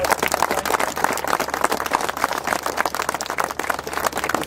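Small group of people applauding, with many overlapping hand claps that run on steadily.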